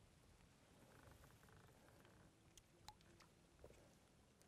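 Near silence, with a few faint ticks in the second half.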